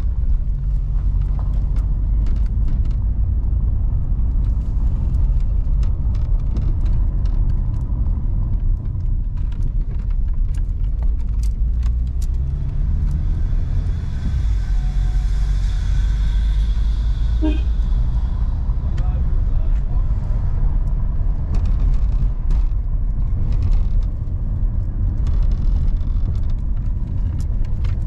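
Steady low rumble of a car driving slowly on an unpaved dirt road, heard from inside the cabin, with frequent small clicks and rattles from the tyres on the rough surface.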